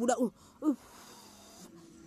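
A woman's voice: a short word, then a faint breathy wheeze lasting about a second.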